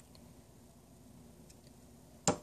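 Near silence: room tone, with a couple of very faint ticks.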